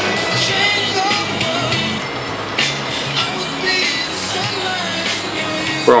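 Music playing back from a cassette on a Technics RS-614 stereo cassette deck, steady throughout.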